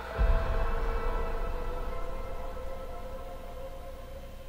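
Dramatic TV score sting: a sudden deep boom about a quarter second in, then sustained held tones that slowly fade.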